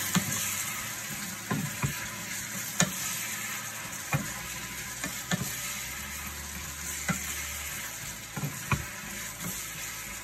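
Diced apples and pears sizzling steadily in a skillet of butter and sugar, with a cooking utensil knocking and scraping against the pan about ten times as the fruit is stirred.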